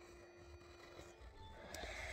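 Near silence: faint room tone with a thin steady hum that stops about halfway through, and a faint low rumble near the end.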